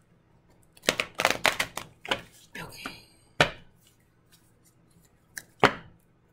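A deck of tarot cards shuffled and handled by hand: a quick flurry of card slaps and rustles starting about a second in, then a few single sharp snaps.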